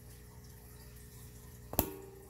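Faint steady hum, then a single sharp knock with a short ring near the end as a graphite ingot mold is handled.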